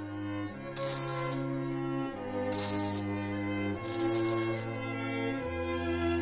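Slow bowed-string background music with long held notes. Over it come three short bursts of MIG welding crackle, each under a second: tack welds fixing nuts to a steel panel.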